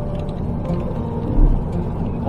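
Steady road and tyre noise from a car driving on a wet road, heard inside the cabin, with one low thump about one and a half seconds in. Faint music plays underneath.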